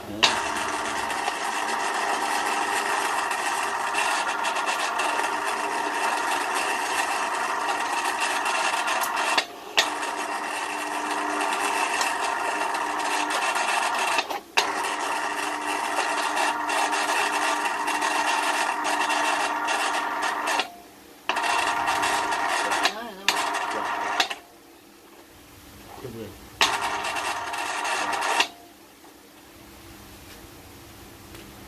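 Japanese-domestic electric winch motor running with a steady whine, switched on and off from its pendant controller. It cuts out briefly several times, stops for about two seconds near the end, runs again, then stops.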